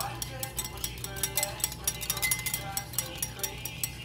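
Wire balloon whisk beating egg and milk in a bowl, its wires clicking rapidly and rhythmically against the bowl, several strokes a second.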